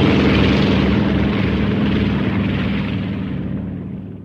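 Propeller airplane engine running steadily, loud at first and slowly fading away toward the end.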